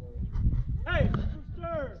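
People's voices talking, over a steady low rumble.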